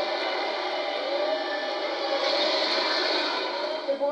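Sci-fi movie trailer soundtrack played back through small speakers: a steady, dense rush of spaceship-battle effects with faint whining glides, thin and without bass.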